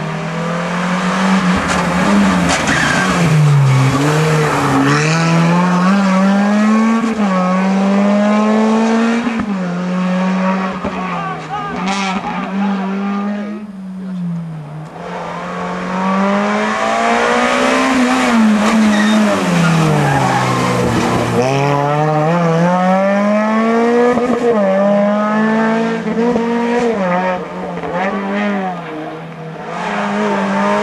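Suzuki Swift rally cars' four-cylinder engines revving hard through a hairpin, one car after another, the pitch repeatedly climbing and dropping with gear changes and lifts, with tyre squeal. The engine sound eases briefly about halfway through.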